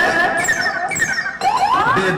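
Electronic synthesizer glide effects in played-back dance music: a held high tone, then a run of falling sweeps, then rising sweeps near the end, like a siren or laser effect.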